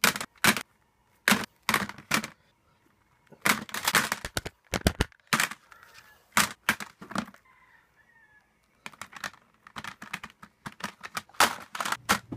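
Plastic CD jewel cases clacking against one another as they are shuffled by hand: sharp, irregular clicks, some single and some in quick clusters, with a short lull a little past the middle.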